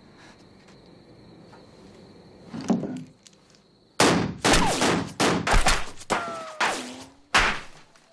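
A brief knock, then about four seconds in a rapid string of some nine pistol shots fired into the wall beside a man, each a sharp crack with a short tail.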